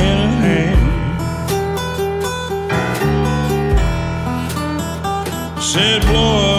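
Electric blues band playing an instrumental passage: a lead line with bent notes over guitar, bass and drums, with no singing.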